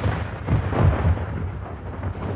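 Deep rumbling boom of an outro logo sound effect, dying away, with a couple of low swells about half a second and a second in.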